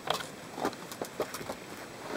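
A few faint, irregular clicks and rustles: a plastic bottle's screw cap being put back on and the bottle handled with gloved hands.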